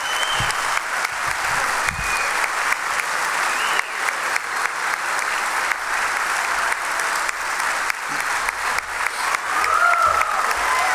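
Sustained audience applause, a dense steady clapping, with a few brief shouts rising over it in the first few seconds.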